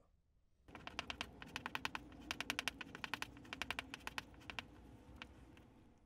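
Knife blade being stropped flat on a leather strop glued to plywood, heard as a run of quick, faint clicks and taps that stops about five seconds in.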